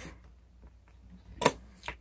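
A sharp, short click about a second and a half in, with a fainter one just after and a few faint rustles, as a handheld digital multimeter and its test leads are handled.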